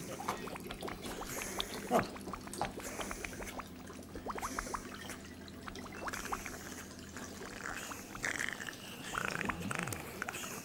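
Liquid pouring and bubbling through laboratory glassware, with many sharp little clicks and a man's brief wordless murmurs near the end.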